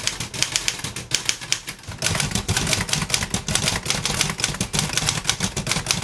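A 1933 Royal 10 manual typewriter being typed on at a steady pace: a quick run of sharp keystroke clacks, several a second, louder from about two seconds in.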